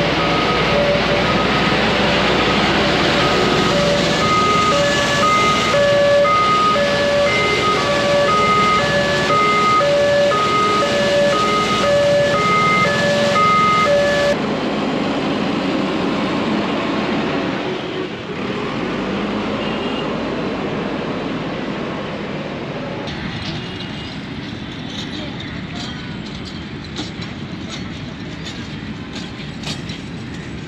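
Municipal street-washing truck running, its water spray rushing onto the road, while a repeating electronic tune of short beeps plays from it. About halfway through this stops abruptly and gives way to the quieter, steadier running of a JCB backhoe loader at work.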